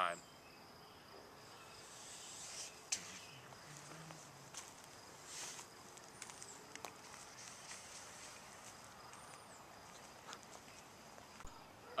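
Faint summer park ambience: a steady high insect trill, likely crickets, with a few brief high chirps and some soft rustles.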